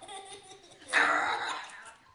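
A young boy laughing, rising to a loud burst of laughter about a second in that then trails off.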